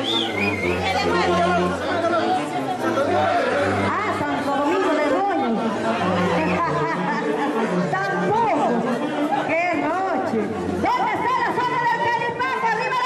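A live band of saxophones, tuba and drums playing, with a steady low bass line. Over it is loud crowd chatter and voices.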